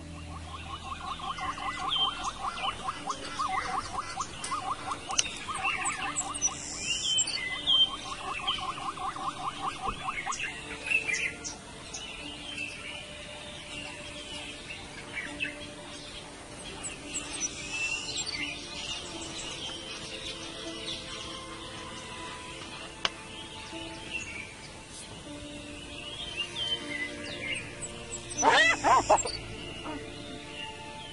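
Background music with wild birds calling and chirping over it. A rapid trilling call repeats through the first ten seconds or so, and a loud sweeping call comes near the end.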